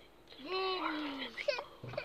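One long meow-like call that falls in pitch, followed by a couple of brief squeaky glides and a soft bump near the end.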